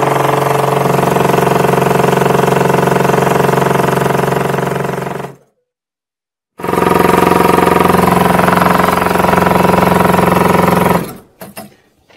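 Motor-driven crank-slider vibrator running noisily, a loud steady rapid rattle from its reciprocating piston, cutting off abruptly about five seconds in. After a second of silence, a similar loud steady mechanical rattle at a slightly higher pitch runs for about four and a half seconds and then stops.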